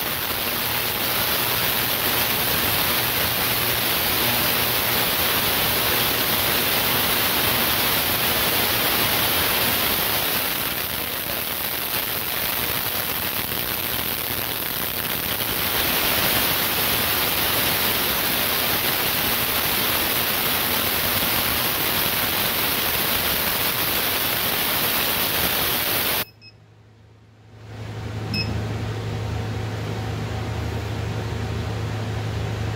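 Ultrasonic cleaner running a cleaning cycle: a loud, steady hissing crackle from cavitation in the bath, easing a little for a few seconds midway. It cuts off suddenly near the end and, after a brief gap, leaves a quieter steady low hum.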